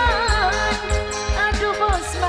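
Live dangdut music with a steady drum beat under a wavering, ornamented sung melody.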